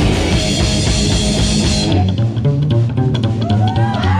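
Live punk rock band playing loudly: upright double bass, electric guitar and drums. About halfway through, the cymbal wash stops and the double bass and guitar carry on.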